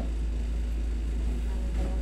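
Steady low hum from a running window air conditioner, with a brief faint murmur near the end.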